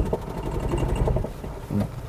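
Honda Amaze petrol car juddering as it pulls away in first gear: a rapid, low 'ghad ghad' shudder heard from inside the cabin, easing after about a second. The mechanic puts the judder down to a worn clutch set and a flywheel that needs resurfacing.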